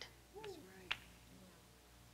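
A near-quiet pause in the preaching: a faint short voice sound a little under half a second in, then a single short click just before the one-second mark.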